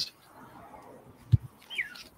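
Bagged comic books being handled on a wooden desk: a faint rustle, then a soft low thump about a second and a half in as a book is set down or the desk is bumped. Just after it comes a brief high chirp that falls in pitch.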